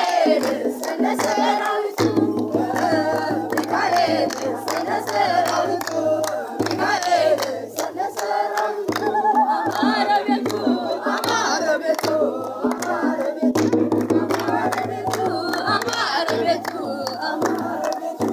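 A crowd singing an Ethiopian Orthodox hymn (zimare) together, with steady rhythmic hand clapping about twice a second.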